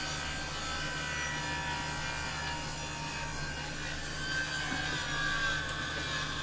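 Benchtop table saw running and ripping waste wood off a glued-up pine paddle blank: a steady motor hum with the blade cutting, swelling slightly near the end.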